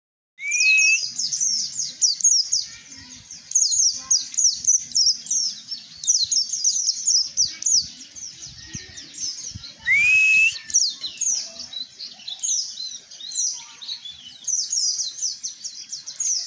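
White-eye (pleci) singing a fast, unbroken run of high twittering chirps, with a rising whistled note near the start and again about ten seconds in.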